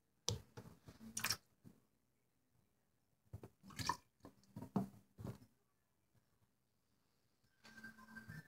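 Faint scattered splashes, drips and small knocks of hands working in a bathroom sink holding a little water, in three short clusters.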